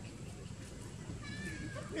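A young macaque gives a short, high, wavering squeal about a second in while another monkey wrestles it down: a distress cry during rough play. A sharp click comes at the very end.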